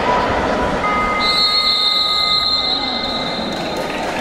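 A sports referee's whistle blown in one long steady blast of nearly three seconds. It starts just after a second lower whistle tone, which stops about halfway through. Crowd chatter runs underneath.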